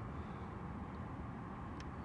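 Steady low background rumble with no clear source, and one faint click near the end.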